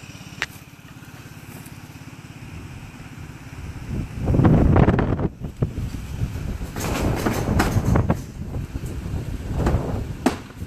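A truck engine running close by, its low rumble swelling to its loudest about four seconds in as the truck pulls up. Scattered sharp knocks and clicks follow in the second half.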